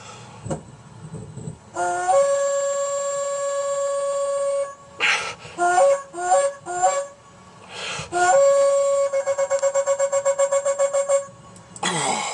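A war horn blown by mouth: a long steady note, three short toots, then a second long note that breaks into a rapid flutter near the end, with sharp breaths drawn between the blasts.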